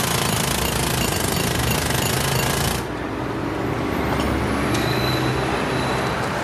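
Pneumatic jackhammer hammering steadily, then stopping abruptly about three seconds in, leaving the steady noise of city street traffic.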